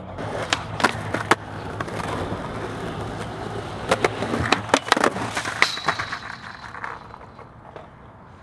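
Skateboard wheels rolling over rough asphalt, with several sharp clacks of the board and trucks hitting the ground. The rolling dies away near the end.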